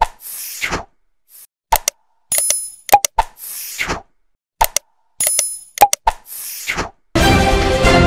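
Like-and-subscribe outro sound effects: sharp clicks, a bright bell-like ding and a whoosh, repeating about every three seconds. Theme music starts near the end.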